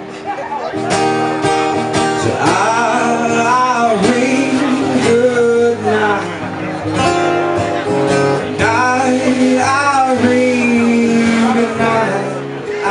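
An acoustic guitar strummed in a steady rhythm, with a man singing over it.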